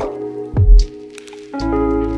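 Alternative rock song with sustained guitar and bass chords and a low drum thump under a second in. After a brief quieter gap the full band comes back in near the end.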